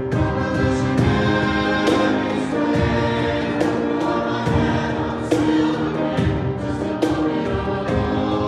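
Choir singing in parts with piano accompaniment and a cajon keeping a steady beat.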